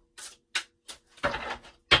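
A tarot deck handled and shuffled by hand: a few short card clicks, a brief rustle of cards about a second in, and a sharp tap near the end, the loudest sound.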